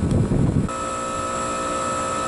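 Trane XL20i air conditioner's outdoor unit running with its heat-recovery unit, a steady machine hum with several held tones. A rushing, wind-like noise fills the first moments, then cuts off abruptly, leaving the quieter hum.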